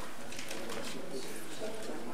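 Indistinct chatter and murmur of several people talking at once in a meeting room, low voices with no clear words.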